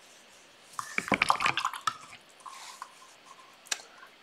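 Paintbrush being rinsed in a water cup: a cluster of quick clicks and small splashes about a second in, then a few faint taps and one sharp click near the end.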